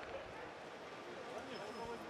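Low background hubbub of an indoor swimming arena, with faint distant voices and no clear single event.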